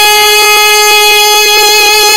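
A high voice holding one long, unwavering note in a sung naat, with the pitch dead level throughout.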